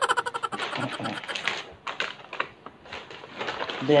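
Snack-chip bags being handled, giving a quick run of sharp, irregular crinkling clicks for about three seconds.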